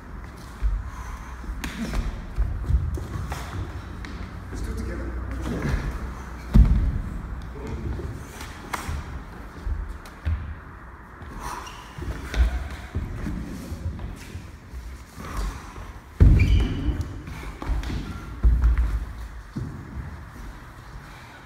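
Irregular dull thumps and scuffs of feet moving on a wooden floor and of strikes landing on bodies in close-quarters sparring, the heaviest about six and a half seconds in and again at about sixteen seconds.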